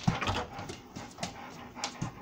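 Dog panting and huffing in about three short groups of breathy bursts, with faint whines in the later two: excited, its mouth open while watching a laser pointer dot.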